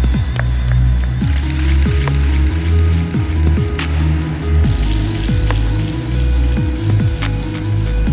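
Background electronic music with a heavy bass and a steady beat of deep bass hits that drop in pitch.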